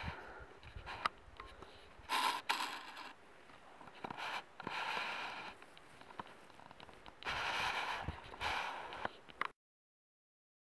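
Rustling, scraping noise in swells of about a second, with scattered sharp clicks; it cuts off abruptly about nine and a half seconds in.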